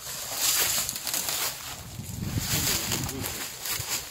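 Footsteps crunching and rustling through dry grass and brittle brush, several irregular steps.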